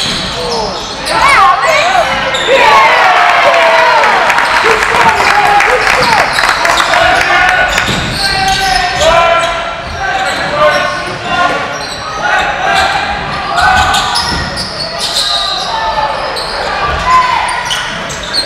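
A basketball game on a hardwood court in a large gym hall: the ball bouncing, sneakers squeaking, and players and onlookers calling out, all echoing.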